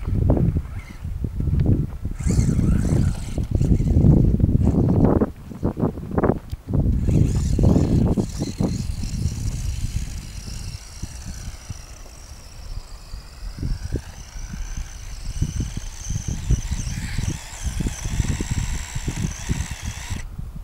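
Onboard sound of a small electric RC buggy being driven over rough ground: heavy rumbling and knocking from bumps and wind on the camera microphone for the first half, then a high motor whine that rises and falls with speed as it runs across grass.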